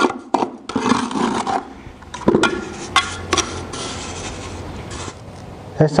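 Mason's trowel scraping cement mortar in a bucket: several scraping strokes in the first second and a half, then a few sharp taps and quieter scraping.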